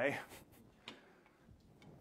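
A man's voice saying "okay" at the start, then a few faint, separate clicks and ticks as a drink tumbler is picked up and a sip is taken from it.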